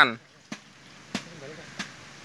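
River water splashing and dripping as a fine-mesh fish net is lifted out of the water, heard as three short sharp splashes over a low steady background.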